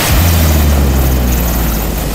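AH-64 Apache attack helicopter hovering low over the ground, its rotor and turbine engines running with a steady, loud low hum.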